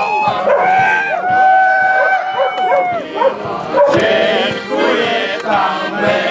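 Accordion playing held notes alongside a bass drum, mixed with voices and a dog barking.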